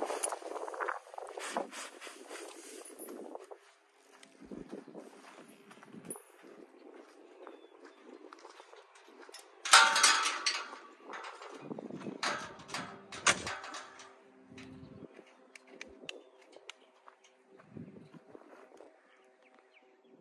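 Loose hay rustling as it is shaken out of a hay bag onto dry ground, with footsteps on dirt. About ten seconds in comes one loud metallic clank, followed by a few more knocks a few seconds later.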